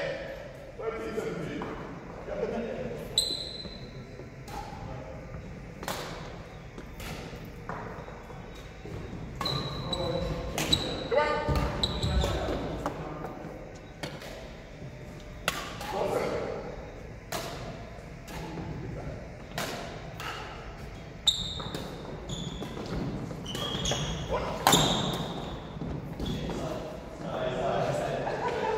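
Badminton doubles play in a large hall: rackets striking the shuttlecock in sharp, irregular hits, with short squeaks of court shoes on the wooden floor and an echo off the hall walls.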